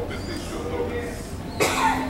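A person coughing once, suddenly, about one and a half seconds in, over faint speech.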